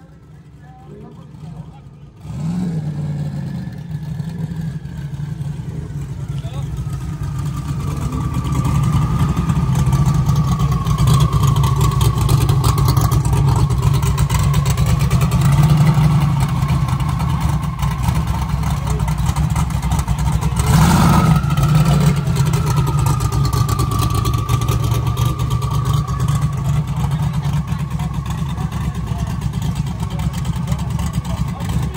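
Drag-prepped sixth-generation Chevrolet Camaro running close by after a burnout: a steady low rumble with a wavering whine above it. It starts suddenly about two seconds in, grows louder over the next several seconds as the car rolls closer, and gives a brief sharp burst about 21 seconds in.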